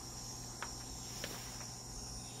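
Recorded Peruvian rainforest ambience playing quietly from a speaker: a steady, high-pitched insect chorus of crickets. Two brief clicks come in the first half.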